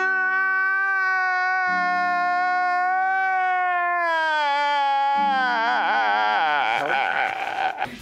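A man crying: one long held cry that slowly falls in pitch for about five seconds, then breaks into shaky, wavering sobs, over sustained background music chords.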